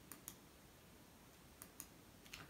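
Faint computer mouse clicks over near-silent room tone: two quick pairs of clicks, one just after the start and one near the end.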